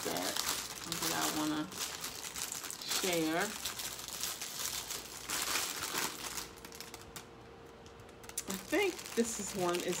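Packaging crinkling and rustling while jewelry is handled, in irregular crackles that ease off for a moment about three quarters of the way in. Short bits of low murmured voice come through between them.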